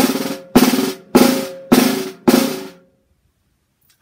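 Snare drum buzz strokes: five crushed strokes, about two a second, each a short buzzing press roll as the stick is pressed into the head and bounces many times, then stops for the last second.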